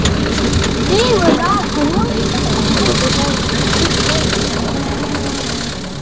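Off-road Land Rover's engine running as it drives through mud and water, with people shouting over it. The sound fades away near the end.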